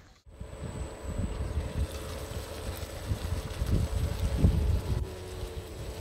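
Wind buffeting a phone's microphone: an uneven low rumble that rises and falls in gusts.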